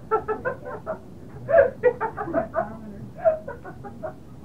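Laughter: a run of short chuckles that goes on through the whole stretch.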